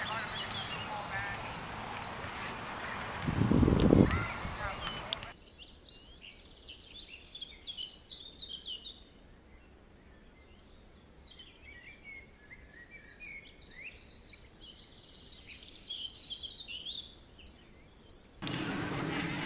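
Small birds chirping and singing over and over, short high calls repeating throughout, over a steady outdoor hiss that drops away after about five seconds. A brief loud low rumble on the microphone comes about three to four seconds in.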